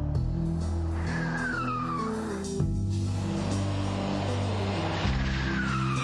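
Car tyres squealing twice, each a falling screech about a second long, the first about a second in and the second near the end, over steady background music.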